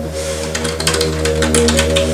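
Computer keyboard typed on quickly: a rapid run of keystroke clicks starting about half a second in, over sustained background music with a low drone.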